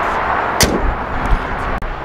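A car hood, on a 2025 Kia Sportage, is lowered and slammed shut, with one sharp bang about half a second in. Low rumbling thuds follow.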